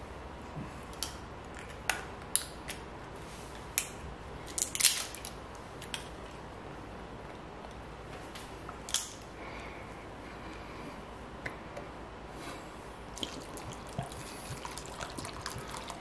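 Fish sauce (nam pla) being poured from a bottle onto chopped chillies and garlic: scattered drips and small clicks, the loudest in the first five seconds, over a low steady hum.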